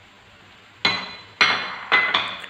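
Three sharp clinks, starting a little under a second in and about half a second apart, each with a brief ring: a glass bowl knocking against a frying pan as minced chicken is emptied into it.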